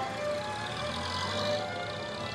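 Car engine running, a vintage racing-car sound effect under background music, briefly a little louder about a second in.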